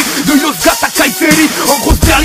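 French hip-hop track: a male voice rapping over the beat, with the deep bass dropped out for these two seconds.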